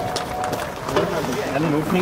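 Indistinct voices talking, with scattered knocks and scuffs from people climbing a ladder out through a roof hatch. A held, voice-like tone runs through the first half-second.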